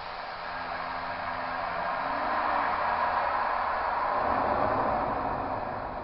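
Automatic modular fire extinguisher discharging its pressurised agent through its sprinkler head: a steady hissing rush that grows louder through the middle and fades near the end.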